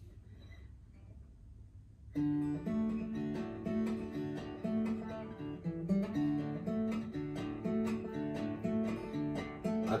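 Acoustic guitar played solo. After about two seconds of quiet, a steady picked song introduction starts and runs on, with a singing voice entering right at the end.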